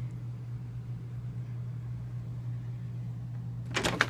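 A steady low hum, then a sudden burst of loud noises near the end.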